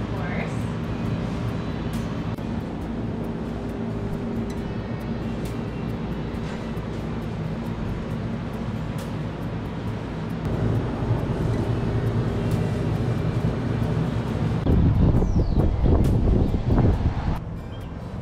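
Coffee shop ambience: a steady low hum with faint background music or voices and scattered light clatter, swelling into a louder low rumbling noise for a couple of seconds near the end.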